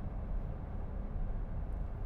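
Steady low rumble of tyre and wind noise inside the cabin of a Jaguar I-Pace electric SUV driving at autobahn speed, with no engine sound.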